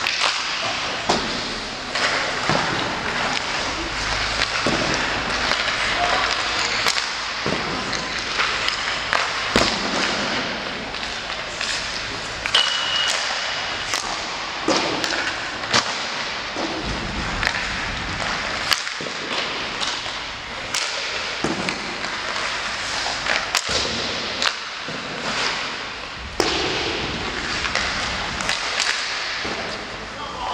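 Ice hockey warmup in a rink: a steady scrape of skates on the ice, broken by frequent irregular sharp cracks and thuds of sticks hitting pucks and pucks hitting the boards and glass. There is one brief ping about twelve seconds in.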